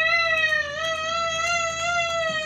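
A young child's long, high-pitched cry, held at a nearly steady pitch throughout.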